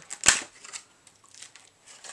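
Plastic lure packaging being handled: one sharp click about a quarter second in, then faint crinkling.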